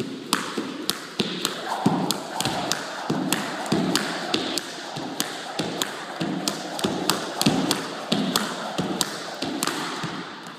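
Skipping rope doing double unders: the rope smacks the floor in a quick, even rhythm of about three sharp slaps a second, with dull thuds of feet landing among them. It starts suddenly and runs without a break.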